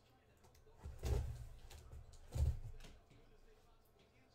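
Two dull thumps with a short scrape, about a second and a half apart, as a cardboard shipping box is handled.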